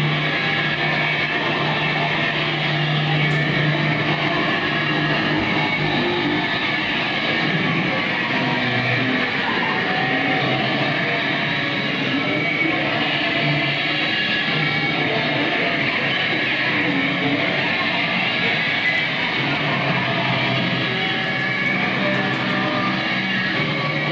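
Live noise band's electric guitars played through amplifiers: a loud, dense, continuous wall of noise with held low notes.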